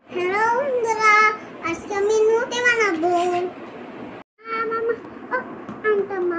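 A young child's high voice singing in sing-song phrases, with a brief break about four seconds in.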